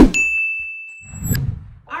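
Animated subscribe-button sound effects: a sharp hit as the notification bell is clicked, then a steady bell ding held for about a second that cuts off abruptly, with a low thump as it ends.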